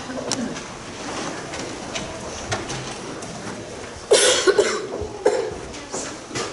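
A person coughing, several quick coughs about four seconds in and one more a second later, over faint rustling and small knocks as a congregation sits down in wooden pews.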